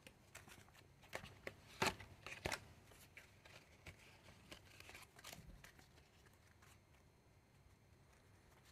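A new deck of playing cards being handled: faint, irregular snaps and flicks as cards are pushed through by hand. The loudest is just under two seconds in, and the handling stops after about five and a half seconds.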